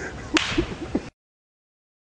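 A single sharp impact sound about a third of a second in, followed by a few short low sounds. The audio cuts off to silence about a second in.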